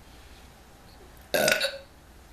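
A woman burping once, loud and about half a second long, a little past halfway through.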